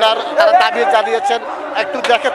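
A crowd of men's voices talking over one another in Bengali.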